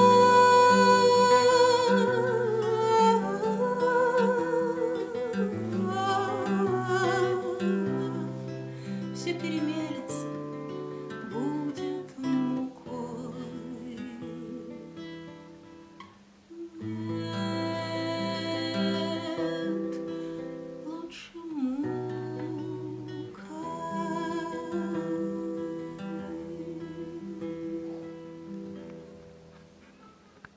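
A woman sings with vibrato to her own classical nylon-string guitar, opening on a long held note. The guitar keeps playing through a brief lull about halfway, and the song fades out at the end.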